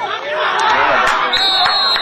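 Several voices shouting and chattering at once, louder from about half a second in, with a high steady tone and a few sharp clicks near the end.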